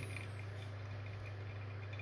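Faint trickle of brewed coffee dripping from a pour-over dripper into a glass server, under a steady low hum.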